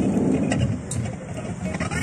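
Car engine and road rumble heard from inside the cabin of a car, a steady low noise with a couple of short clicks.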